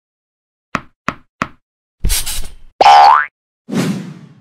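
Cartoon sound effects: three quick light taps, then a short whoosh, a loud rising boing, and a thump that rings out briefly near the end.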